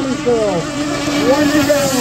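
Gas-powered 1/6-scale RC unlimited hydroplanes running at race speed, their small two-stroke engines whining loudly. The pitch slides down early, climbs again about a second and a half in, and drops once more near the end as the boats pass and turn.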